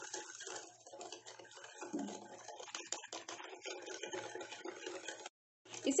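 Small wire whisk beating instant coffee, sugar and warm water in a glass bowl: rapid, irregular clicking and scraping of the wires against the glass while the mixture is still thin. The sound cuts out briefly near the end.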